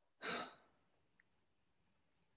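A person's short sigh, one breath lasting about half a second near the start.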